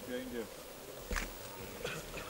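Low voices of onlookers talking, then two soft knocks, one about a second in and one near the end.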